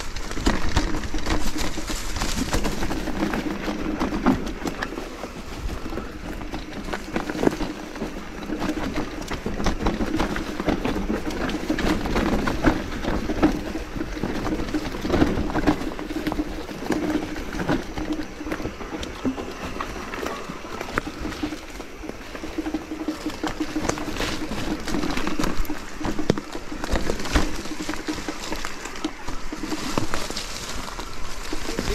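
Mountain bike rolling fast down a leaf-littered dirt trail: tyres crunching over leaves and dirt, with many irregular clicks and knocks as the bike rattles over bumps. A low buzz comes and goes underneath.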